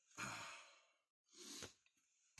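A man sighing: one out-breath of most of a second, then a second, shorter breath about half a second later.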